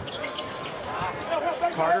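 A basketball bouncing on a hardwood court during live play, a few sharp bounces. A man's commentary voice comes in near the end.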